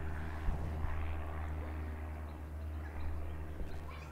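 Steady low drone of an engine running in the distance.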